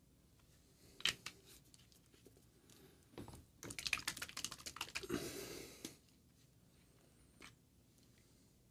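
Hand-handling noise at a painting desk: a few sharp clicks, then a denser run of clicking and rustling a few seconds in that stops sharply near the six-second mark.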